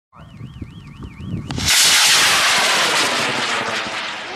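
A warbling electronic tone over a low rumble, then, about a second and a half in, the sudden loud rushing noise of a high-power rocket's dual-thrust K590 solid motor igniting at liftoff, staying loud and easing off slowly as the rocket climbs.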